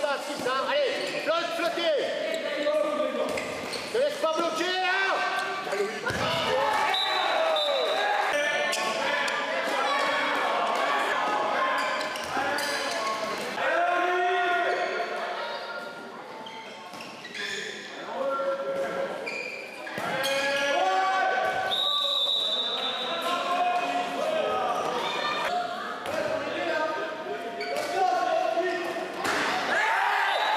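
Handball bouncing on a wooden sports-hall floor, with players and spectators shouting and calling out throughout, all echoing in a large hall. A few brief high-pitched squeals cut through twice.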